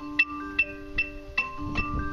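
A marching band's front ensemble playing a slow mallet-percussion melody: metal-bar keyboard notes struck about every 0.4 s, each ringing on, under held keyboard tones.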